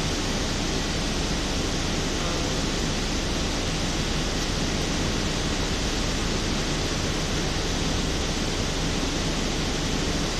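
Steady, even rushing noise with a low hum underneath, holding the same level throughout.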